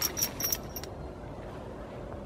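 Metal buckles and rings on a pony's halter jingling close to the microphone: a quick run of about four light clinks in the first second.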